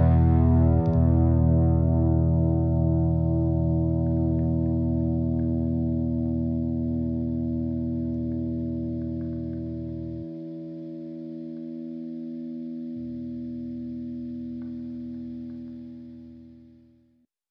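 Music: a single held chord rings out and slowly dies away. Its lowest notes drop out for a few seconds partway through, then return before the whole chord fades to silence near the end.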